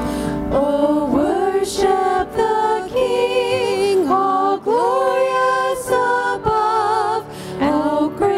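Women's voices singing a worship song together through microphones, with electric bass guitar accompaniment. The notes are held for about a second each, several with a marked vibrato, and there are short breaths between the phrases.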